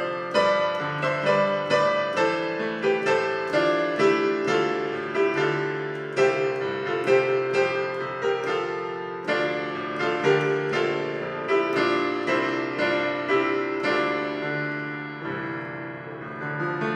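Digital piano played with both hands: a flowing right-hand melody of struck notes over held left-hand bass notes, slightly softer near the end.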